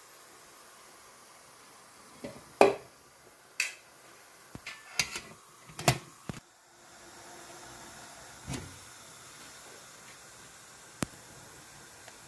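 Steel idli cups and the aluminium steamer lid being handled: a run of metal clinks and knocks, the loudest about two and a half seconds in. Then a steady faint hiss of steam from the idli steamer, with a couple of single clicks.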